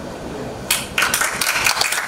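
Audience applauding, starting suddenly a little under a second in.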